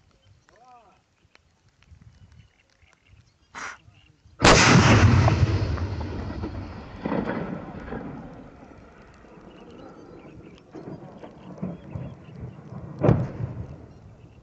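One heavy artillery blast about four seconds in, followed by a long rolling echo that dies away over several seconds. It is preceded by a short sharp crack, and a smaller bang comes near the end.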